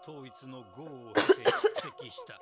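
A man's narration over a soft, steady music drone, broken about a second in by a loud burst of coughing.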